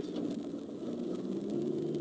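Steady engine and road noise inside a moving car's cabin, a low even drone.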